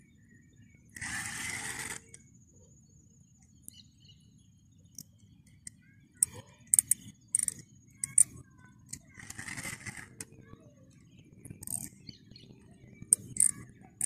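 Rod-and-reel handling sounds while a hooked fish is being played: scattered sharp clicks and ticks, mostly in the second half, and two brief hissing bursts, one about a second in and one near ten seconds, over a faint low rumble.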